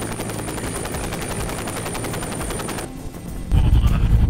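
Bell utility helicopter running on the ground: a rapid, even rotor beat under a steady high turbine whine. About three seconds in it cuts off, and after a brief dip a much louder low rumble takes over: the helicopter in flight heard from inside its open cabin.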